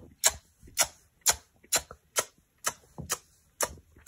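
A row of short, sharp smacking clicks, evenly paced at about two a second, as the paper Tinkerbell cutout gives a kiss to each paper character in turn.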